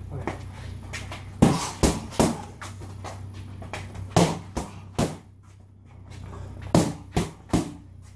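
Boxing gloves smacking into focus mitts in quick combinations: three sharp hits about a second and a half in, two more around four to five seconds, and a final quick three near the end.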